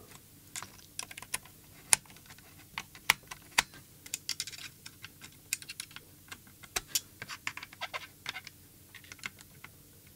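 Irregular small clicks and taps of hands and a small screwdriver working inside an open plastic RC transmitter case, as the newly fitted gimbals' screws are nipped up and the wiring is handled. The clicks come several a second, with a few sharper ones.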